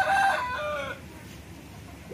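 A rooster crowing: the end of one crow, loudest in the first half-second and falling in pitch as it dies away about a second in.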